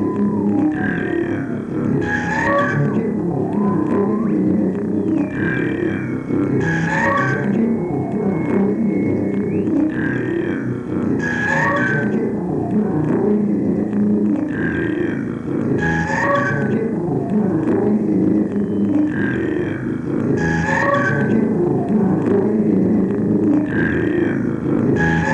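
Sound-poetry piece of whistles and voice in a reverberation chamber, layered live on a tape loop. The same cluster of short whistled chirps comes round about every four and a half seconds over a dense, low vocal layer. A single steady whistle tone is held for about four seconds a quarter of the way in.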